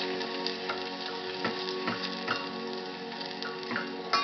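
A wooden spoon stirring garlic in a stainless steel pot gives several irregular knocks and scrapes against the metal, over a light sizzle of the garlic frying. Music with long held notes plays steadily underneath.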